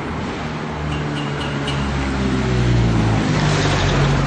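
A motor vehicle's engine running close by, its low hum getting louder over the first three seconds.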